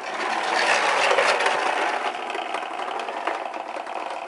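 Plastic toy bubble lawn mower pushed over concrete, its wheels and mechanism making a fast, steady rattling clatter, loudest in the first couple of seconds.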